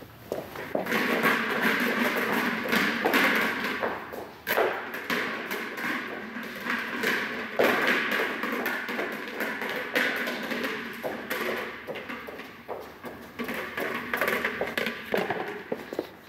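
A hollow rubber ball being kicked and bouncing and rolling across a training-hall floor, with repeated thuds and footsteps, echoing in the large room.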